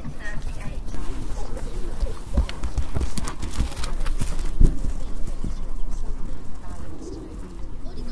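A horse's hooves knocking and stamping at irregular intervals, a few sharp knocks in a cluster and another a little later, over a low rumble of ambience.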